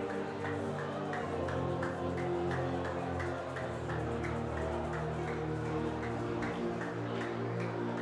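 Background music of sustained, slowly changing chords with a light, steady tick about two or three times a second.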